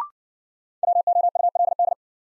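A short, slightly higher beep right at the start. Then, from just under a second in, a Morse code tone keyed at 60 words per minute spells out the word "would" in a quick run of dots and dashes.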